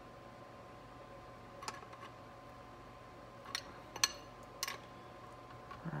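A few sparse, light metallic clicks of a tool and parts being worked on a 4L60E automatic transmission case as a fastener is snugged down by hand, over a faint steady hum.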